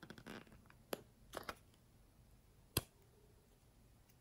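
Small plastic tub and its snap-on lid handled by hand: soft scraping rustles and light plastic clicks, then one sharp click a little under three seconds in.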